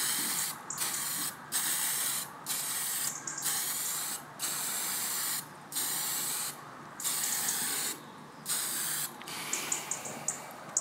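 Aerosol can of brown spray paint hissing in about ten short bursts, each a second or less, with brief gaps between passes as a light coat goes onto model railway rails.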